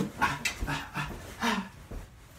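A man's rapid, breathy vocal puffs and short grunts, about six in a second and a half, while he dances: hard breathing from the exertion or half-voiced beat sounds marking the moves.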